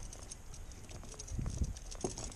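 Hands handling the metal frame of a mesh fish basket at the side of a kayak: small clicks and knocks, with a couple of dull low thumps about a second and a half in.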